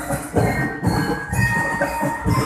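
Parade band percussion playing a steady marching beat, low drum hits about two a second with rattling shakers or cymbals between them.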